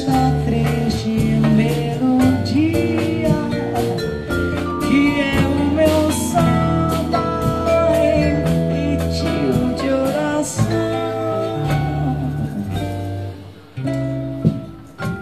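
A live bossa nova band playing: sustained bass notes, guitar, vibraphone and drums with percussion, with a voice singing over them. The band thins out and drops in level near the end.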